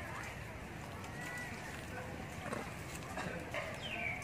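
Macaques calling: a few short high squeaks and a falling call near the end, over a steady low outdoor rumble.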